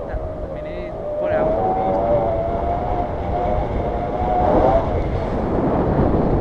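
Wind buffeting the microphone of a camera during a tandem paraglider flight, a steady low rumble. A thin wavering tone sits over it and fades out about five seconds in.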